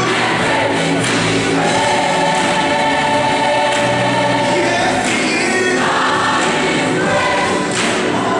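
Gospel choir singing in full harmony over a live band of guitar, keyboard and drums, holding one long chord for a few seconds in the middle before moving on.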